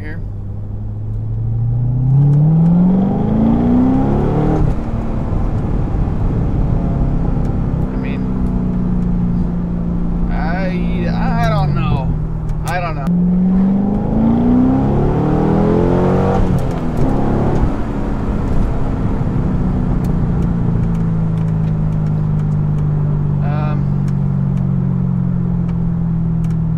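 C6 Corvette V8 heard from inside the cabin, pulling hard under full throttle in second gear with the revs climbing steeply about two seconds in. The engine eases off, climbs hard again around the middle, then settles to a steady cruise.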